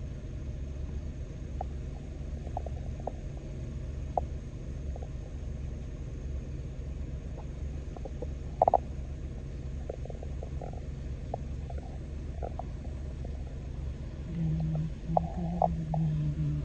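Agricultural spray drone's rotors humming low and steady, with a brief sharp knock a little past halfway.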